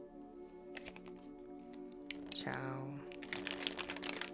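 Soft ambient background music with steady held tones. Near the end comes a quick flurry of crisp clicks and rustles from a deck of cards being handled.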